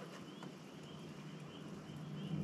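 Quiet outdoor ambience with faint, short high chirps repeating about three times a second.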